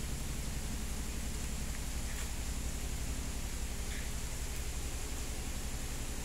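Diesel engine of a home-built mobile sawmill vehicle running steadily, with an even, rapid low beat.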